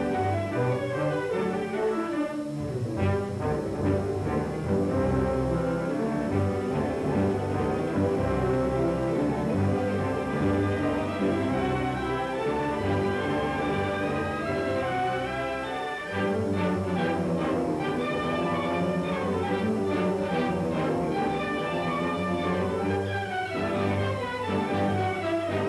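Orchestral film score, with bowed strings carrying the music; it dips briefly about two-thirds of the way through and comes back in with a fuller, lower passage.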